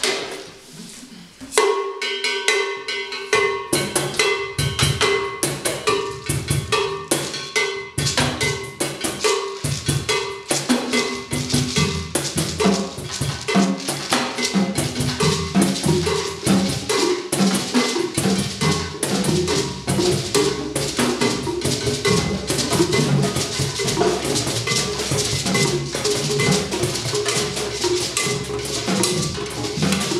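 A percussion group playing a steady rhythm on drums, with a cowbell keeping the pulse. The playing starts about a second and a half in and grows denser.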